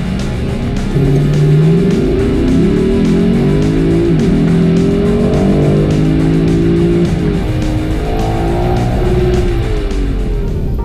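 Lexus LC 500's 5-litre petrol V8 under hard acceleration in Sport S+ mode. Its pitch climbs steadily, drops sharply at an automatic upshift about four seconds in and again about seven seconds in, then climbs again.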